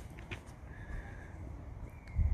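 Low, steady background noise in a pause between words, with one sharp click right at the start and a faint thin tone for about half a second near the middle.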